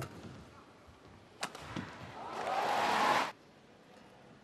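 Two sharp strikes of a shuttlecock off badminton rackets, about a second and a half apart, then an arena crowd cheering loudly for about a second as the rally is won. The cheer cuts off suddenly.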